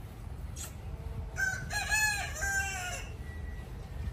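A rooster crowing once: a call of several drawn-out notes, starting about a second and a half in and lasting under two seconds.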